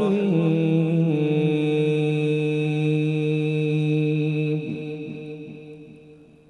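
A man reciting the Quran in melodic tajweed style, holding one long steady note for several seconds before his voice trails away near the end.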